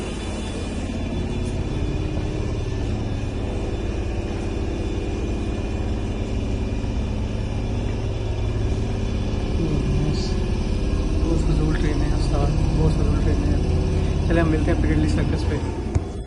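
Steady low rumble of a London Underground tube train, heard from inside the carriage, growing a little louder in the second half. A voice is faintly heard near the end.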